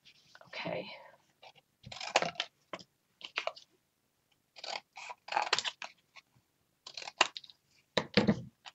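Chipboard being cut and handled: a string of short, irregular cutting and rustling noises.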